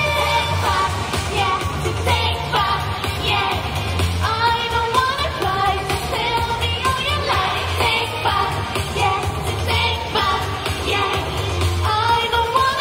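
Japanese idol pop song performed live: girls' voices singing into microphones over a backing track with a steady bass beat.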